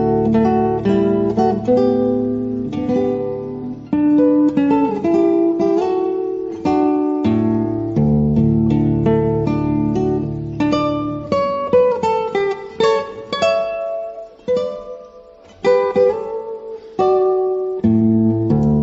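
Instrumental music on plucked strings, like an acoustic guitar: a melody over plucked and strummed chords, with a brief softer passage about three-quarters of the way through.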